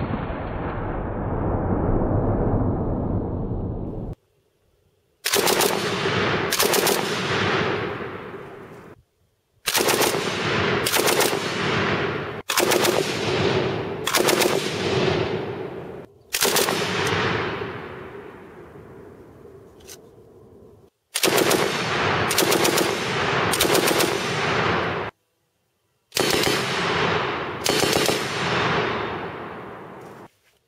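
A Breda Model 37 heavy machine gun, chambered in 8mm Mauser, fires a series of short bursts, often two or three close together. Each group is followed by a long rolling echo, and some echoes cut off abruptly between clips.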